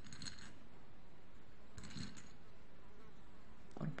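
Faint steady hiss with two soft clicks of plastic beads being picked out of a ceramic plate, one near the start and another about two seconds later.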